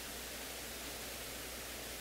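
Steady hiss with a low hum underneath, with no distinct sounds.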